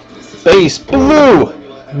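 A man's voice: a short loud call about half a second in, then a longer drawn-out one whose pitch rises and falls.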